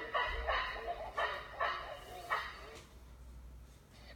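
Baboon barking: about five short, harsh barks in the first two and a half seconds, played back through a tablet's speaker.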